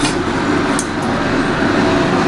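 A stainless steel lid clinks against a steel container as it is pressed shut: a sharp click right at the start and two more a little before and after the one-second mark, over a steady loud background noise.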